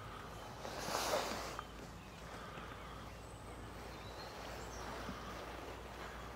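Quiet outdoor lakeside ambience: a low, steady background noise with a brief swell of rushing noise about a second in.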